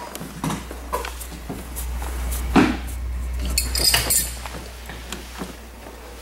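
Metal wrenches clinking and tapping against a snowmobile's steering tie rod and jam nuts as the ski alignment is adjusted by hand, with a sharp knock about two and a half seconds in and a run of bright clinks around four seconds. A steady low hum runs underneath.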